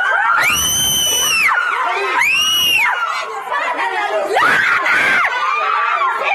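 Women screaming and shouting in a physical fight. Three long, high-pitched screams, each under about a second, rise over a constant din of overlapping shouting voices.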